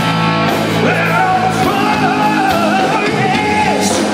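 Hard rock band playing live, with held electric guitar chords and cymbal crashes; a male lead vocal comes in about a second in.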